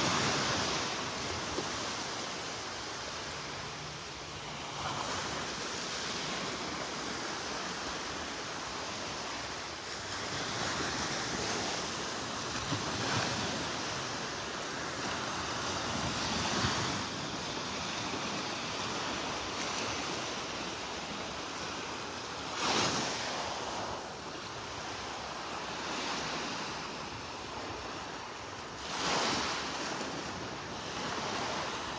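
Small surf washing onto a sandy beach: a steady hiss of breaking water that swells every few seconds, with two louder surges near the end. Some wind on the microphone.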